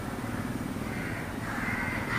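Faint bird calls over steady outdoor background noise, with a call near the end.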